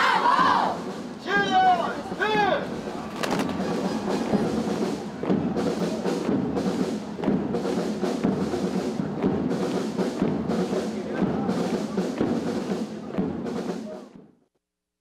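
Children shouting a patriotic chant in unison, cut off after about two and a half seconds, then a parade band's music with a steady drum beat a little under two strokes a second.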